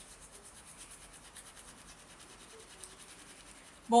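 Steel wool (Bombril) scrubbed quickly back and forth over a metal drawer pull: quiet, even scratching strokes, several a second, rubbing off tarnish loosened by a vinegar-and-salt soak.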